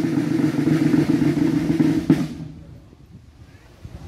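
Snare drums playing a sustained roll, ending with a final stroke about two seconds in, then ringing briefly.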